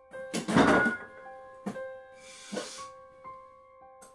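Soft piano music with sparse held notes, over which a refrigerator door is pulled open: a loud burst of noise about half a second in, followed by a couple of quieter knocks.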